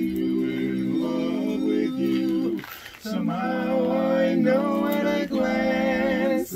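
Barbershop quartet singing a cappella in close four-part men's harmony, holding long chords, with a short break for breath about halfway through before the next phrase.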